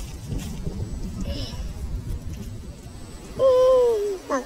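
A low rumbling noise, then near the end a loud, drawn-out high vocal sound from a person, held for about half a second and falling slightly in pitch.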